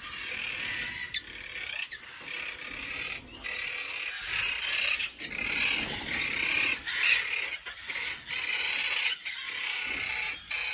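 A mixed flock of small parrots and parakeets chattering and calling without a break, with sharp high calls standing out over the steady chatter.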